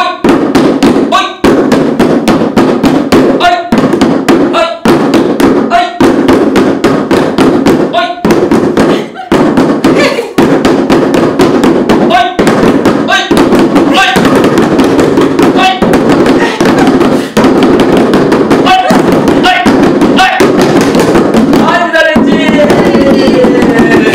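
Group drumming on handmade drums, plastic buckets with taped heads struck with plastic bottles: rapid, continuous hits from several players at once, with voices calling out in between.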